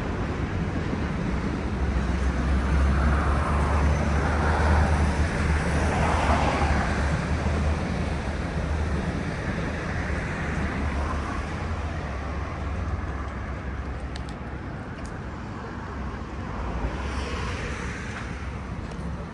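City road traffic: a vehicle passes with a low engine rumble, swelling in the first half and fading away, over steady traffic noise.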